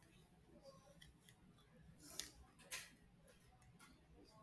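Near silence: room tone with a few faint, short clicks, two of them a little past two seconds in.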